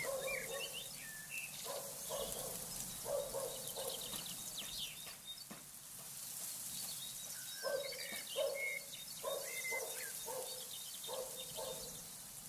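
Faint, repeated short animal calls, coming in two bouts at about two a second, with a few higher chirps among them.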